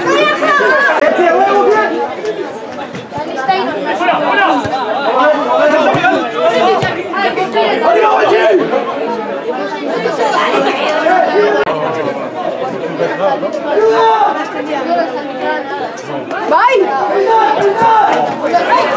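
Many spectators talking and calling out over one another close to the microphone, a steady mixed chatter of voices.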